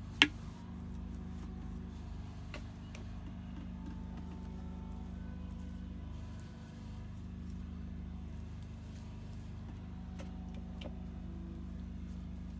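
Steady low hum with a few even tones, and one sharp click just after the start; a few faint ticks follow later on.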